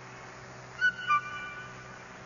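Two brief high-pitched notes about a third of a second apart, the second lower than the first, over faint background hiss.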